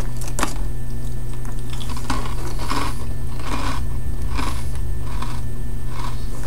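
A person chewing a dry, oven-baked aged-cheese bite: about seven soft, crunchy chews less than a second apart, over a steady low hum.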